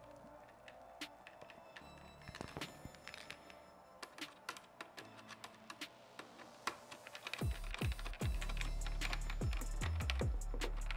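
Light clicks and taps of a screwdriver and hard plastic mirror-housing parts being handled as a small screw is driven in. Background music plays under it, and a loud bass beat comes in about seven and a half seconds in.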